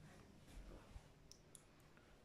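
Near silence: quiet room tone with a few faint, short, high clicks in the middle.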